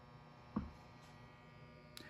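Faint steady electrical hum, with a single soft thump about half a second in.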